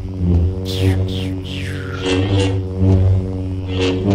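Background music built on a loud, steady low drone, with higher swooping sounds falling in pitch laid over it.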